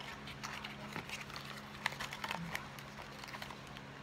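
Fingers and fingernails working at a small cardboard cosmetics box to open it: light, irregular clicks and taps on the card, with one sharper click near the middle.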